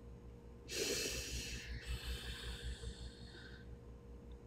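A person's loud, noisy breath, starting about a second in and trailing off over the next three seconds.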